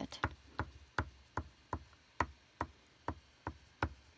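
A drawing stick dabbed again and again onto paper on a tabletop to make dots for sunflower seeds: short, dry taps, about three a second.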